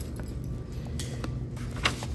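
A steady low hum with a few light clicks and jingles, the sharpest about a second in and near the end.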